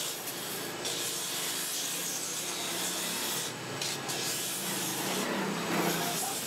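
Bent wooden net-frame strip pressed against the spinning sanding drum of an electric motor, making a steady abrasive hiss over a faint motor hum. The hiss thins briefly twice in the second half.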